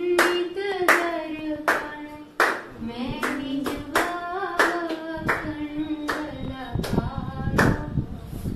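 A single voice singing a devotional song in long held notes, accompanied by rhythmic hand clapping of about one or two claps a second.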